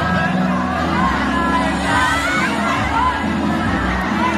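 Crowd shouting and cheering over dance music played through loudspeakers.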